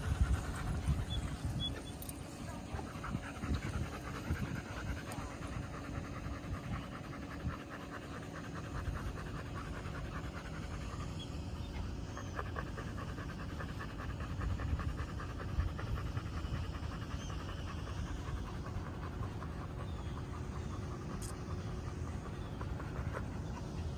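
A dog panting steadily close by, in quick rhythmic breaths.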